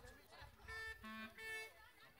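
A clarinet playing three short held notes, faintly, as if starting up for a dance tune.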